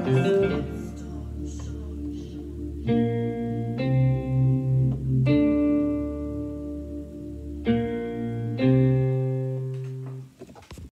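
Electronic keyboard played: a quick run of notes, then sustained chords over held bass notes, struck anew about five times and left to ring, the last chord fading away near the end.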